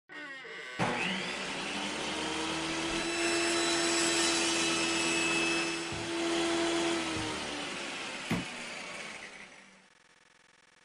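Sound-effect circular saw: the motor spins up with a brief rising whine, then runs with a steady hum under a dense whirring hiss. A few sharp knocks come in the second half, and the sound fades out near the end.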